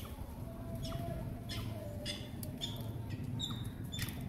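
Birds giving short, high chirps, about five scattered over four seconds, over a steady low outdoor rumble.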